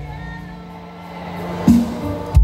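Live pop band playing an instrumental gap between sung lines: held keyboard chords over a steady low note, with a single loud drum hit near the end.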